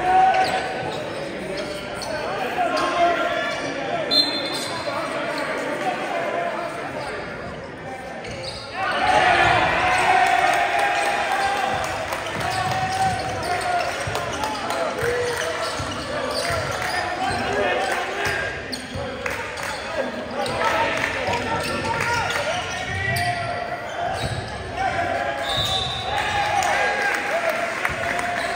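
Basketball game in a gym: indistinct players', coaches' and spectators' voices echoing in the hall, with a basketball dribbling on the hardwood court. It grows louder about nine seconds in.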